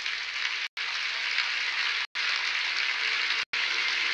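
Audience applauding, steady, cut by three brief dropouts in the audio about every second and a half.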